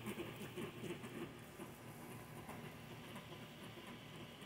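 Faint patter of many small soft sounds from a flock of American white ibises feeding on a lawn, busier in the first second or so and then settling quieter.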